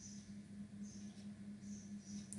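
Faint background noise: a steady low hum with faint high-pitched chirps repeating about twice a second.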